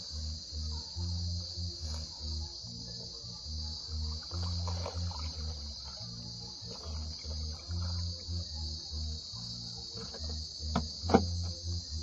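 Steady high-pitched insect chorus with a low, uneven pulsing beneath it, and two sharp knocks near the end, the second the loudest.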